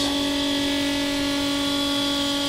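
Steady machinery drone in a boat's engine room: one constant low pitched tone with a stack of overtones above it, unchanging in level.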